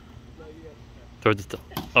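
A short shout, then a couple of sharp knocks from a flying disc hitting the plastic Can Jam can, a little over a second in.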